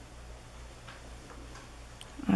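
Quiet room with a steady low hum and a few faint, irregular ticks as fingers handle a small rubber eraser.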